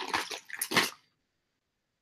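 A few short rustling, clattering handling sounds as loose costume jewelry is picked through, over about the first second. Then the sound cuts out to dead silence.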